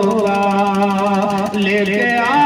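Devotional singing with musical accompaniment: one long held note, steady in pitch and wavering slightly.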